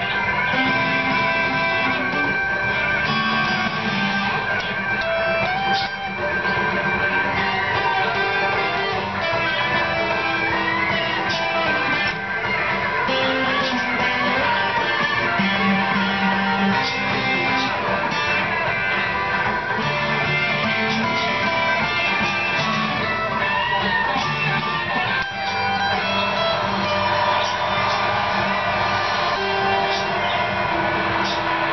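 Stratocaster-style electric guitar playing an instrumental blues passage, with notes and strummed chords ringing continuously.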